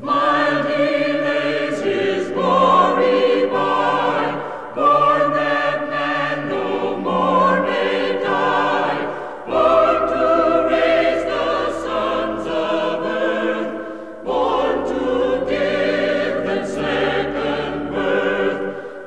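Choir singing Christmas music in held chords that move to a new chord every few seconds, with no clear words.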